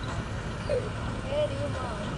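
Faint distant voices calling out, several short wavering calls over a steady outdoor background hiss.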